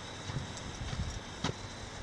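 Irregular soft, low knocks of a hiker's footsteps and handheld-camera handling, with one sharp click about one and a half seconds in, over a faint steady hiss.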